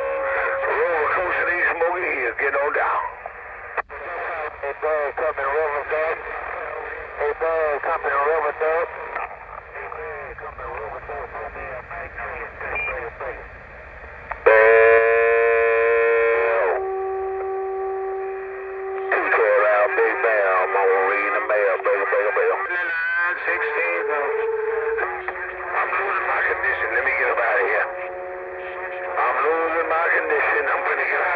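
Other CB operators' voices coming through a Cobra 148 GTL CB radio's speaker, thin-sounding. Several steady held tones cut through the talk, the loudest about halfway through, with shorter ones near the end.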